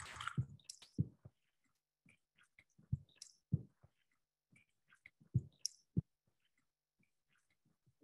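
Looped field-recording snippet of water drops hitting a microphone: pairs of soft low thumps with faint clicks, the pattern repeating about every two and a half seconds as a rhythm. The recordist takes the thumps for water dripping from trees onto the microphone and a click for possible digital noise.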